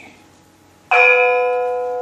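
A bell struck once about a second in, ringing with several clear steady tones that fade slowly.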